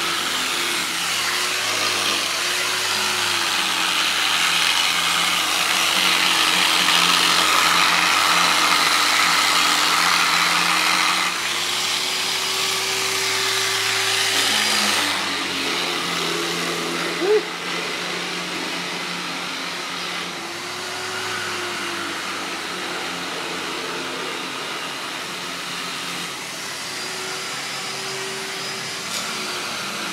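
Handheld electric power sander running against a trailer's aluminium rail. Its motor hum sags and rises in pitch as it is worked, over a gritty hiss. It is louder for about the first fifteen seconds, then fainter.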